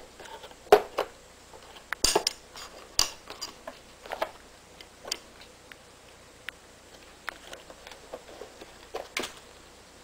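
Cats biting and pawing at a cardboard box of .22 Long Rifle cartridges: irregular cardboard rustles and light metallic clinks of the loose brass-plated rounds shifting inside, busiest in the first few seconds.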